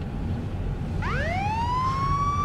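Police car siren starting up about a second in, its wail rising in pitch and then holding steady, over the low rumble of the car being driven.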